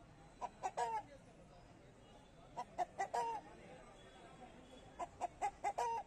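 A chicken clucking in three bouts, each a few short clucks ending in a longer drawn-out note: about a second in, around three seconds in, and near the end.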